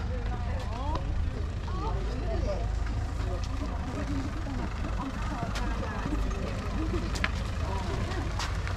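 Outdoor street ambience: people's voices in conversation over a steady low rumble of a car engine, with a few sharp clicks in the later seconds.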